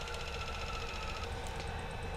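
Magellan TruPRP auto-spin centrifuge running partway through its PRP separation cycle, with a low hum and a steady motor whine. One of the high tones in the whine stops a little over a second in.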